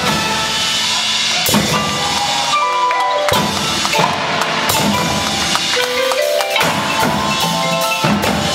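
A drum corps front ensemble playing: runs of pitched marimba and mallet-percussion notes over drum and cymbal hits, with a rising run of notes about six seconds in.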